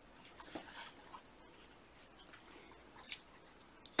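Faint rustling and a few soft ticks as yarn and the metal tips and cable of a circular knitting needle are handled, with stitches shifted and the cord drawn through. The sounds come mostly in the first second and again near the end.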